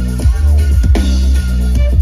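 Loud electronic dance music from a live DJ set played over a large festival sound system, with heavy, sustained bass.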